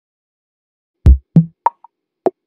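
Silence, then about a second in a quick run of four short percussive hits: a deep thump, a second lower hit, then two brief higher pops. It is the percussive lead-in of the intro music.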